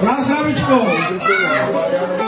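Speech: a man talking into a hand-held microphone, with other voices overlapping.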